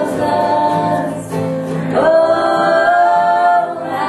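Bluegrass band singing in harmony over acoustic guitar, banjo and upright bass: a held sung line, a short dip just past a second in, then a new long held note from about two seconds.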